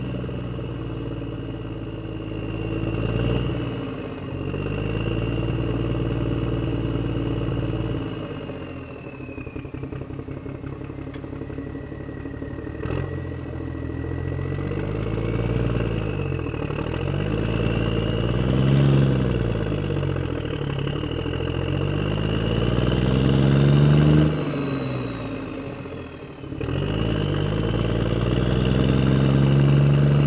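Motor vehicle engine running and being revved. A rattly, lower-pitched stretch comes about a third of the way in. Then the revs rise and fall several times, drop off suddenly near the end, and pick up again.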